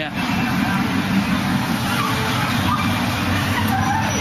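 Steady, loud downtown street noise: a continuous low rumble of road traffic.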